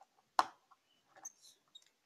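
Plastic toy figures being handled: one sharp tap about half a second in, then a few faint clicks and rustles.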